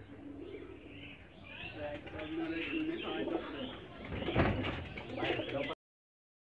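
Caged pigeons cooing, with higher chirps over the coos and a thump about four and a half seconds in. The sound cuts off just before the end.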